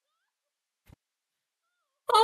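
Near silence, with faint short squeaky calls that rise and fall in pitch and a single click about a second in.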